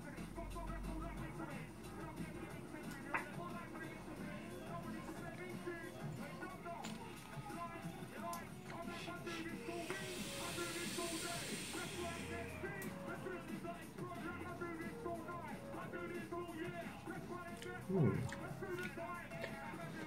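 Quiet background music throughout. About halfway through comes a hiss lasting about two seconds, the vape's coil firing as a drag is taken. Near the end there is a brief vocal sound falling in pitch.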